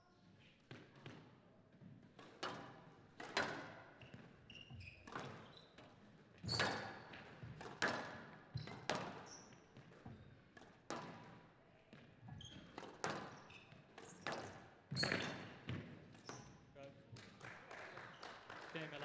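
A squash rally: the ball cracking off rackets and the court walls in an irregular series of sharp impacts, ringing in the glass court, with shoe squeaks on the floor between shots. It is the game-ball rally that decides the game.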